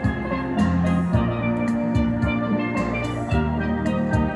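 Steel drum band playing a tune: ringing steel pan melody over low bass pan notes, with sharp percussion hits keeping a steady beat.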